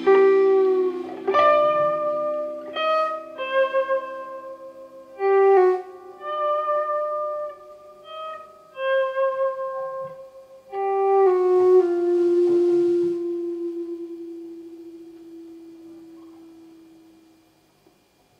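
Electric guitar playing a slow closing phrase of single sustained notes, the last one left to ring and fade out as the song ends.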